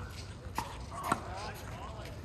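Two sharp tennis ball impacts about half a second apart, with faint voices in the background.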